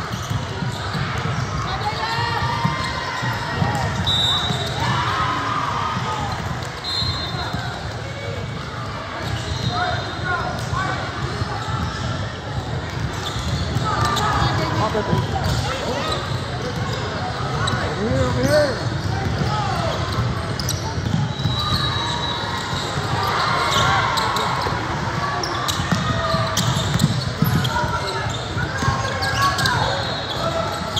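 Basketball being dribbled on a hardwood gym court amid live game play, with short high squeaks of sneakers and players and spectators calling out throughout.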